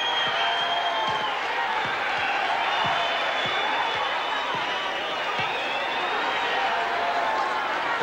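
Arena crowd cheering and shouting, a steady din of many voices.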